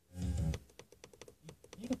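Car FM radio stepping up the band during a scan: a brief snatch of a station's voice at the start, then a fast run of clicks with tiny fragments of sound as the tuner moves from frequency to frequency.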